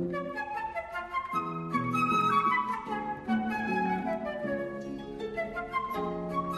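Flute and harp duo playing classical chamber music: a sustained flute melody over a steady run of plucked harp notes.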